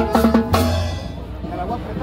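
Latin dance music with drums, bass and held notes, which stops about a second in, leaving the chatter of a crowd.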